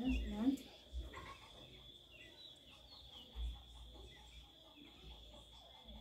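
Quiet outdoor ambience: a steady high-pitched drone with a few short falling bird chirps. Low rumbles hit the microphone now and then, loudest right at the start, where a brief murmur of voice is also heard.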